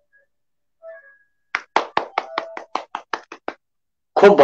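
A quick, uneven run of about a dozen sharp hand strikes over two seconds, starting about a second and a half in after a near-silent pause.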